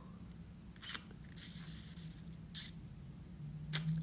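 A few short, breathy sniffs close to the microphone from a person whose nose is running with a cold, then a sharp click near the end.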